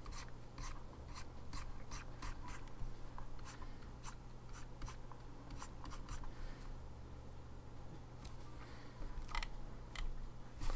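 Stylus flicking across a graphics tablet in quick short strokes, each a faint scratch, about three a second, over a low steady hum.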